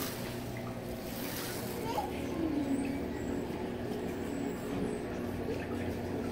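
Goldfish aquarium water and filter running: a steady low hum with faint trickling water.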